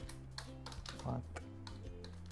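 Typing on a computer keyboard: a run of quick key clicks. Soft background music with held chords plays under it.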